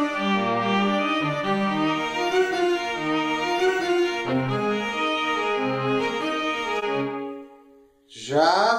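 Sampled violin and cello playing a simple melody together, the cello in a lower harmony and the violin in a higher one, each panned partly to one side and with reverb added. The notes die away into silence near the end.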